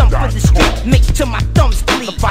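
Hip hop track: a male rapper's verse over a beat with deep bass kicks that fall in pitch, several to the second.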